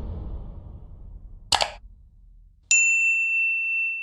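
Sound effects for an animated subscribe button: a fading low rumble from an earlier hit, a short click about a second and a half in, then a bright single bell ding that rings steadily for about two seconds.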